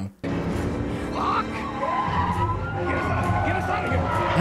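TV drama soundtrack starting about a quarter second in: a police siren holds one long, slowly rising and falling wail over a music score and vehicle noise.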